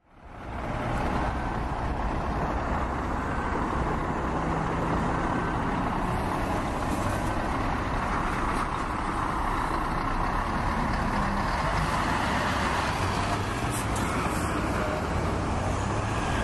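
Steady outdoor background noise: a continuous, even rush that fades in over the first second, then holds level with no distinct events.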